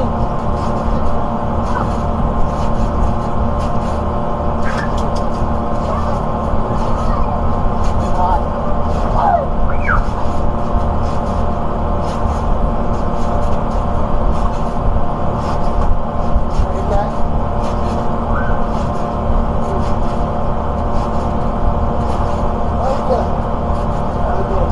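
A steady low rumble with a constant hum, over faint children's voices and light clicks from kids bouncing on a backyard trampoline.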